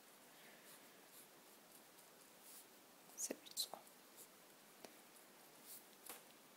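Pen writing on paper: faint scratching strokes, a few sharper ones about three seconds in, as a formula is written out.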